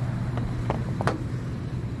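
Steady low mechanical hum, with three light clicks in the first second or so.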